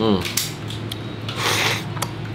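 Clicks and light clatter of a lobster shell and tableware being handled, with a brief rustling hiss about a second and a half in.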